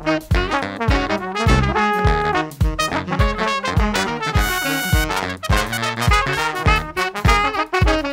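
Funky latin-jazz recording: a horn section of trumpets, saxophones and trombones plays over a steady drum beat.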